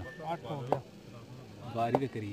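Faint men's voices talking in the background, with a sharp click a little under a second in and another near the end.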